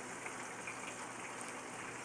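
Faint, steady hiss of food cooking on the stove, with a few very faint ticks.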